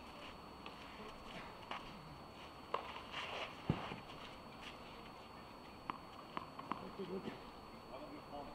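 Tennis ball struck by rackets in a doubles rally on clay: sharp pops, two about a second apart, the second the loudest, then three quick ones close together a couple of seconds later, over faint crowd murmur.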